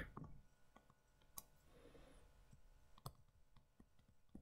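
Near silence broken by a few faint, separate clicks of a stylus tapping on a writing tablet as handwriting is done, about three across the stretch.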